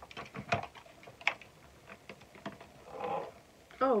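Scattered clicks and knocks of hard plastic as the top of a small battery-powered toy washing machine is handled and pressed into place.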